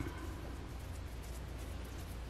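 Quiet room tone with a low steady hum and a faint click right at the start, from a hand screwdriver turning a screw into a plastic router base plate.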